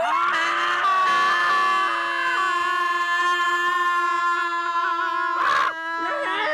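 A jump-scare scream: one long, loud scream that rises at the start and then holds a steady pitch throughout, with a short noisy burst near the end.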